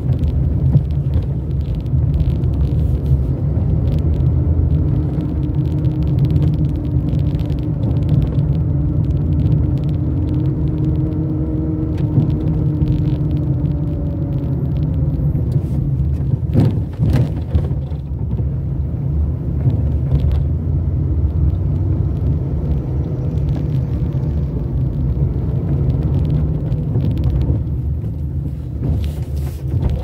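A car driving along a city street, heard from inside: a steady low rumble of road and engine noise, with the engine note slowly rising and falling as the car changes speed. A single sharp knock a little past halfway through.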